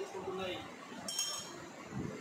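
A short, ringing metallic clink about a second in, a utensil knocking against a stainless steel bowl.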